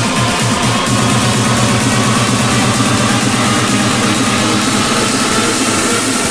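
Electronic dance music: a loud, buzzing distorted synth bass, pulsing rapidly at first and then holding as a steady drone about a second in, under a dense wash of high noise.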